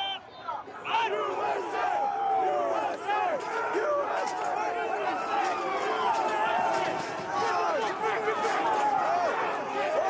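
A large crowd shouting and yelling, many voices overlapping at once, at the front of a crush against police barricades. The noise dips briefly at the start and comes back loud about a second in.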